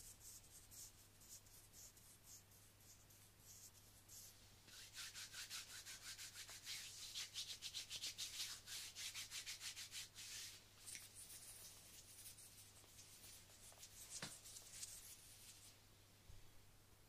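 Palms rubbing together close to a binaural microphone in quick back-and-forth strokes: soft at first, loudest through the middle, then lighter again.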